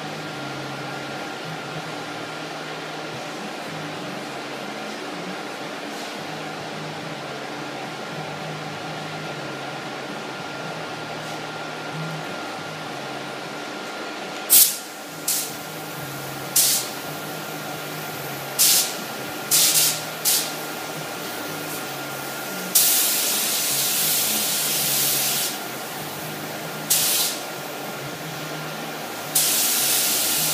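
Compressed-air paint spray gun spraying primer: after a stretch of steady hum from exhaust fans, a run of short trigger bursts of hiss starts about halfway through, followed by two longer passes of a few seconds each near the end.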